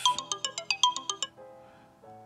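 A phone ringtone playing from the loudspeaker of a Samsung Galaxy S8-series phone running LineageOS 19: a quick melody of short, high notes, about eight a second, that stops about a second and a half in and fades away.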